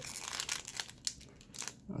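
Foil wrapper of a sealed hockey card pack crinkling in the hands as it is flexed and handled, in short irregular crackles.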